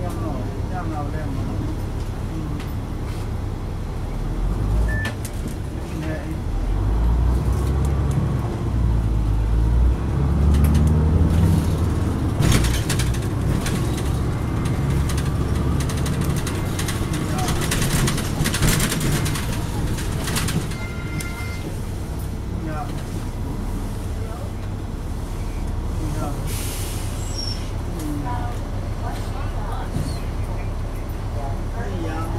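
Cabin noise of a 2004 Neoplan AN459 articulated transit bus: its Caterpillar C9 diesel engine rumble swells as the bus pulls away from a stop several seconds in, then carries on steadily as it drives, with a faint whine. There are a few sharp rattles from the cabin midway.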